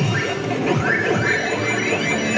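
Pac-Man Wild Edition slot machine playing its electronic game music and arcade-style sound effects, with quick rising and falling pitch sweeps, as a reel fills with Pac-Man wild symbols.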